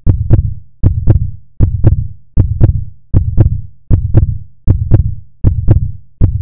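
Deep electronic double thump repeating about every 0.8 s like a heartbeat, each beat a pair of hits with a sharp click on top.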